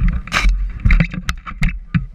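Handling noise from an action camera being held and fumbled: a rapid string of irregular knocks and clicks against the housing, with one longer hissing scrape about half a second in.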